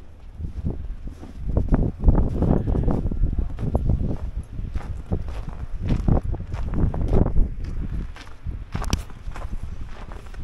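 Footsteps crunching through snow on a sidewalk, about two steps a second, over a steady low rumble. A sharp click comes near the end.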